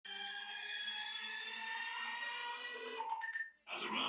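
A sustained electronic synthesizer tone, a chord of several steady pitches sliding slowly downward, breaks up about three seconds in and drops out for a moment. Dense electronic dance music then kicks in near the end.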